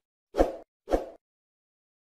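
Two short whoosh-pop sound effects about half a second apart, each sharp at the start and quickly fading, from an animated subscribe-button overlay popping onto the screen.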